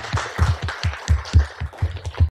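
Audience applauding, with separate claps about four or five a second standing out over the rest.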